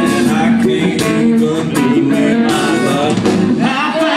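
Live country band playing: a male lead singer over electric guitar and drums, heard from the crowd.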